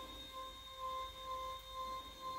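Electric lift motor of an adjustable bed base running steadily as it raises the head section: a faint, even hum with a thin whine.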